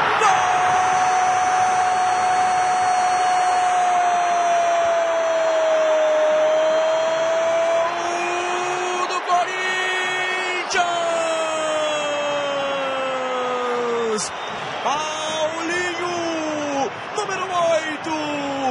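A football TV commentator's long drawn-out goal shout, held for about eight seconds and slowly falling in pitch, over steady stadium crowd noise. A second long call, falling further, follows a few seconds later, then shorter excited commentary.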